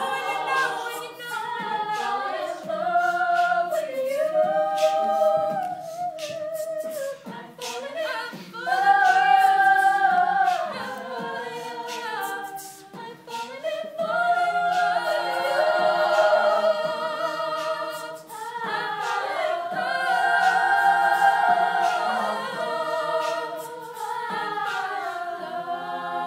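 All-female a cappella group singing: a lead voice holding and sliding between long notes over close backing-vocal harmonies.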